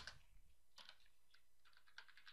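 Faint computer keyboard keystrokes: several light, scattered taps.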